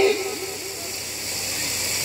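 A man's amplified voice dying away in a fast string of repeats from a PA system's echo effect, over a steady hiss from the sound system.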